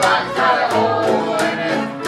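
Live acoustic country string band playing: strummed and picked guitars over an upright bass, with fiddle, in a steady beat between vocal lines.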